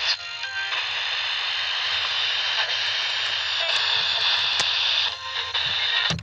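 Steady band-limited hiss with a faint low hum, like the noise floor of an old radio or film recording, sampled as the opening of an electronic music track. It breaks off at the end.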